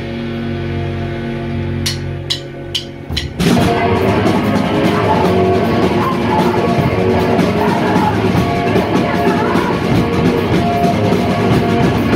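A live rock band: sustained electric guitar and bass notes ring out, then four evenly spaced stick clicks count in the next song, and the full band with drum kit comes in loud about three and a half seconds in.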